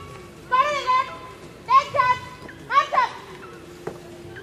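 Shouted parade drill commands: three short, high, strained calls, about a second apart.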